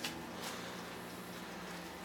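Microwave oven running: a click at the start, then a steady low hum from the oven.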